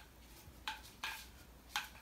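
Three light, sharp clicks of small plastic parts over faint room noise, as a plastic vacuum attachment is handled and fiddled with.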